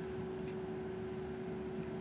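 Low background noise with a steady, faint single-pitched hum and no distinct events.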